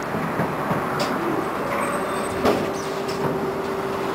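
Konstal 105Na tram rolling slowly, heard from inside: even running noise with a steady hum that comes in about a second and a half in and holds, and a few sharp knocks, the loudest about two and a half seconds in.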